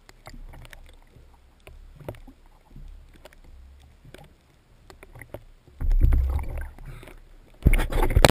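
Sea water sloshing and splashing around a camera held at the waterline, with low rumbling surges and scattered clicks; a louder rush of water comes about six seconds in and again just before the end.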